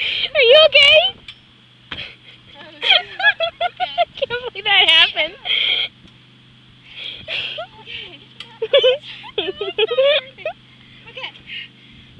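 Girls' voices laughing and squealing in high-pitched bursts, near the start, again from about three to six seconds in, and again from about seven to ten seconds in.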